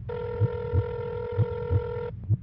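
A telephone ringing tone heard down the line: one steady beep about two seconds long, over a low pulsing beat in pairs like a heartbeat.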